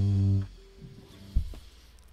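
A band's final chord on guitars and bass ringing steadily, then stopped short about half a second in; after that it is quiet but for a single faint click.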